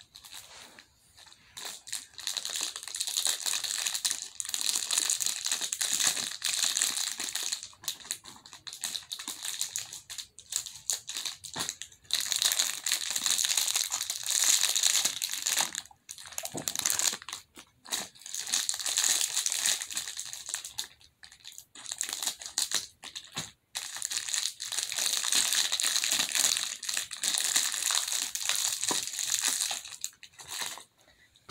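Stress-ball packaging crinkling as it is handled and pulled open by hand, in several bouts a few seconds long with short pauses between them.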